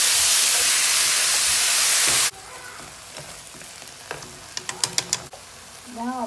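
Sliced beef and onion sizzling loudly in a hot oiled frying pan as they are stirred with chopsticks. The sizzle cuts off abruptly about two seconds in, leaving a much quieter sizzle with a few sharp clicks near the end.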